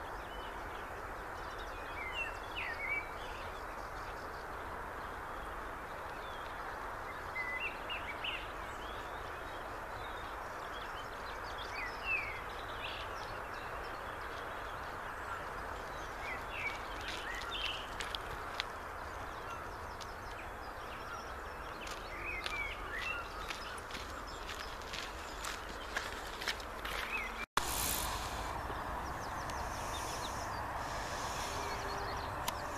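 Small birds chirping now and then over a steady outdoor hiss, with scattered footstep crunches on a gravel path in the second half as a walker and dogs come closer.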